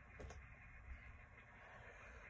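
Near silence: room tone with a faint low hum.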